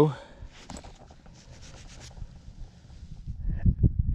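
Faint scratchy rubbing of gloved fingers working dirt off a small, thin piece of dug metal.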